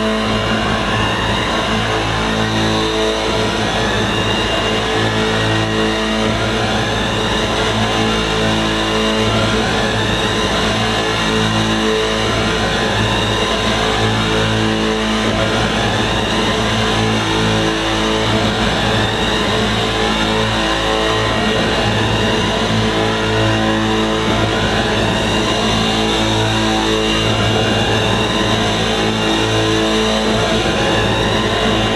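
Loud live electronic music over a hall PA, taped from the audience: rising sweeps repeat over and over above a blocky low drone that steps on and off.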